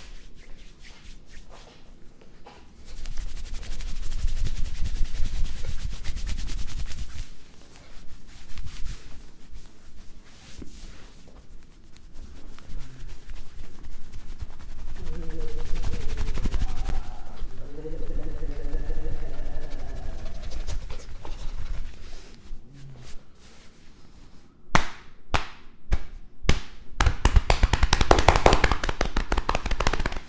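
Rapid trains of hand strikes from a joined-palms chopping and slapping massage on a man's back and shoulders, rattling off fast like a drumroll. There is a long burst a few seconds in, a few single sharp slaps, and another fast burst near the end.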